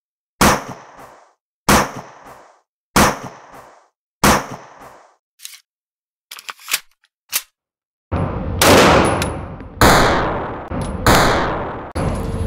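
Gunshot sound effects in an intro sting: four single shots about a second and a quarter apart, each ringing off, then a few light metallic clicks, then three heavier booms over a sustained rumble.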